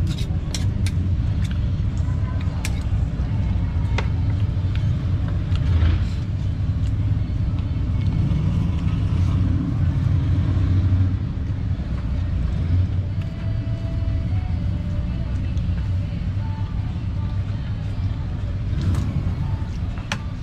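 Street-stall ambience: a steady low rumble with people talking in the background and a few sharp clicks in the first few seconds.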